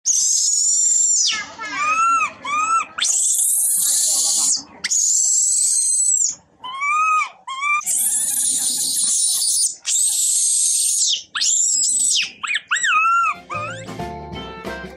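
Infant long-tailed macaque screaming: long, high, shrill screams alternate with shorter rising-and-falling squeals, the distress cries of a baby left by its mother. Music starts near the end.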